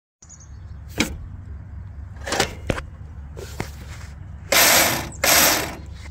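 Riding lawn mower's ignition key clicking a few times, then its electric starter cranking in two short half-second bursts with a mechanical gear rattle. The engine does not start: a starter fault.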